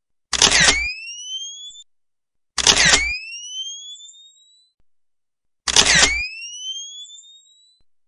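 Camera shutter click followed by the rising, fading whine of a flash recharging, heard three times, each time identical, two to three seconds apart.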